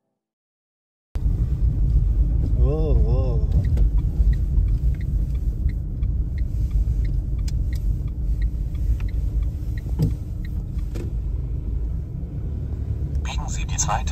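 Car cabin noise while driving: a steady low rumble of road and engine that cuts in about a second in. A sat-nav voice begins giving directions near the end.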